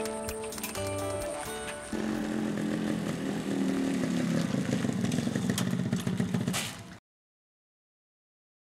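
Guitar background music for about two seconds, then a motorcycle engine running as the bike rides up and slows, getting louder. All sound cuts off abruptly about seven seconds in.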